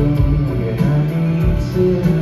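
Live rock band playing a slow, guitar-led instrumental passage with sustained bass notes, heard from among the concert audience.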